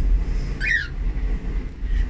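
A cockatiel gives one short falling chirp about half a second in, over a steady low rumble.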